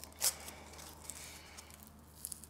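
Glued blocks of rigid foam insulation being twisted apart by hand: one short scratchy crunch of foam about a quarter second in, then only a faint low hum.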